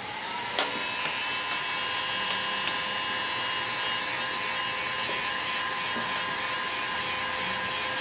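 Electric heat gun running steadily: an even rush of blown air with a steady motor whine, which rises slightly in pitch in the first second as the fan spins up. It is blowing hot air onto a PVC pipe to soften it for bending.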